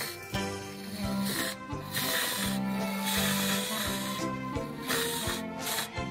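A whipped-cream siphon hissing and sputtering in several short spurts as it pipes cream, over background music with held tones.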